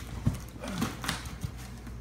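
Stacked sheets of dense foam packing pulled up out of a cardboard box, rubbing and squeaking against the box walls, with a few irregular knocks; the sharpest is about a quarter second in.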